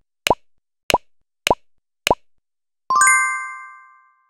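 Cartoon-style pop sound effects: four quick upward-flicking pops about 0.6 s apart. They are followed, about three seconds in, by a bright sparkly chime that rings out and fades.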